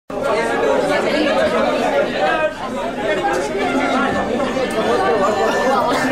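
Many voices talking at once without a break: an audience chattering.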